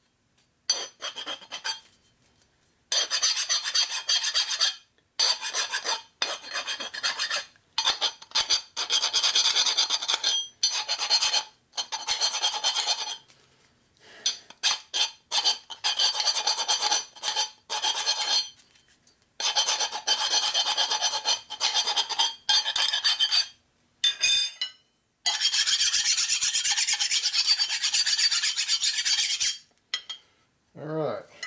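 Hand file scraping across the edges of a cut steel tube piece, deburring it in repeated strokes. The strokes come in runs of a second or two with short pauses, and there is a longer unbroken run near the end.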